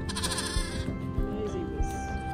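A lamb bleats once, a short wavering call in the first second, over background music with a steady beat.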